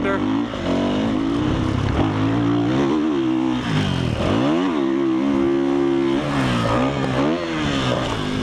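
Dirt bike engine revving as it is ridden hard around a motocross track, heard from a helmet-mounted camera; the pitch rises and falls with the throttle, and the revs drop sharply and climb again about halfway through.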